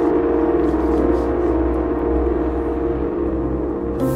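Dark ambient music: a steady low drone with several sustained, gong-like held tones that fade slightly.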